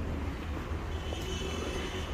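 Outdoor background noise: a steady low rumble, with a faint high-pitched tone coming in about a second in.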